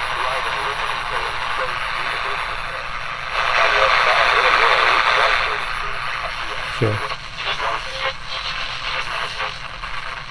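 AM static hissing from the small speaker of a GE 7-2001 Thinline pocket radio, with a faint broadcast voice barely audible under it: a weak distant station near the top of the AM band. The static swells louder for about two seconds a few seconds in, and there is a single click about two-thirds of the way through.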